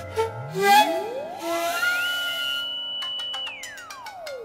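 Ondes Martenot playing a slow, smooth glissando: one pure tone slides up from a low hum to a high held note, stays there for over a second, then glides back down near the end. Scattered piano and plucked notes and a brief breathy hiss sound beneath it.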